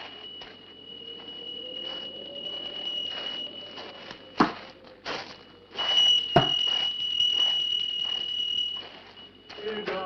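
A steady, high, thin whistling tone from the film's soundtrack holds throughout and swells louder for a few seconds past the middle. Under it run irregular soft crunches, and two sharp knocks land about four and a half and six and a half seconds in.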